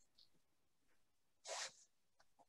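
Near silence, with one short, soft breathy sound about one and a half seconds in.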